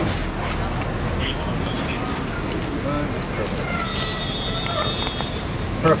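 Steady city street traffic noise with faint voices in the background, and a thin high tone about four seconds in.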